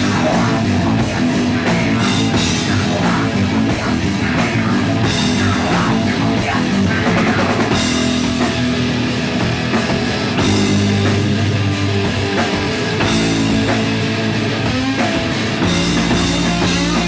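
A heavy rock band playing live and loud, with electric bass, electric guitar and a drum kit.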